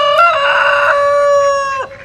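Rooster crowing once: a short opening note, then a long held final note that cuts off shortly before the end.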